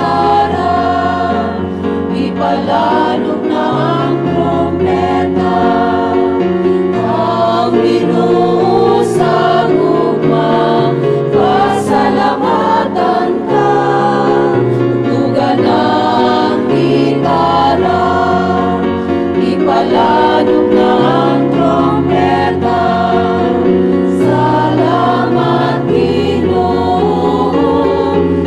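A mixed church choir singing a hymn with keyboard accompaniment, the low chords held and changing every second or two.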